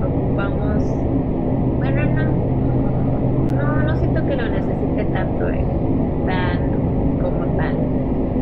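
Indistinct talking over a steady low hum and rumble.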